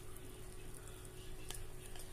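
Quiet handling of baked potato pieces in a terracotta pot with a plastic spatula, with a faint click or two, over a steady faint hum.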